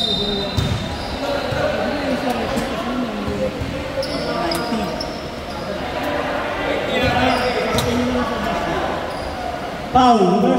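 A basketball bouncing with a few thuds on a hardwood court, echoing in a large gym, over indistinct voices of players and onlookers.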